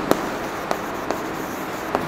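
Chalk writing on a chalkboard: a few short, sharp taps and scratches as a word is written.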